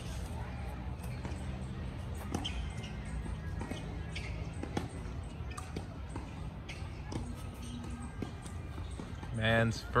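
Tennis ball being struck by racquets and bouncing on a hard court during play: a few sharp pops spread over the first five seconds, over a steady low background hum and faint distant voices.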